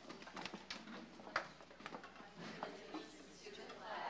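An audience getting to its feet in an auditorium: scattered knocks and clacks of seats and shuffling, with a low murmur of voices and one sharper clack about a second and a half in.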